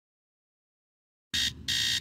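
Total silence, then two short electronic beeps about a second and a half in, an intercom-style signal announcing an incoming message.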